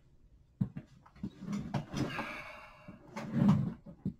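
Knocks and rustling of a person moving about a small room and sitting back down in a chair: two sharp knocks about half a second in, then handling and shuffling noise that is loudest near the end as he settles into the seat.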